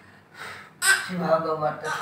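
A woman speaking softly in a breathy voice. It starts with an audible intake of breath just under a second in, after a quieter moment.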